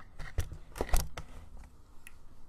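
Handling noise close to a desk microphone: about five sharp clicks and soft knocks in the first second and a half, then quieter.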